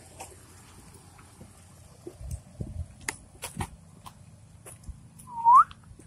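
A person gives one short whistle that rises in pitch near the end, calling the dog. A few scattered taps and clicks come before it.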